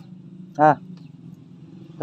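A single short spoken 'ah' about half a second in, over a steady low background hum.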